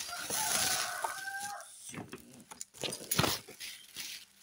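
A rooster crowing once in the background, a single held call of about a second and a half starting just after the beginning. It is mixed with close rustling of cloth and handling noise, and a sharp knock about three seconds in is the loudest sound.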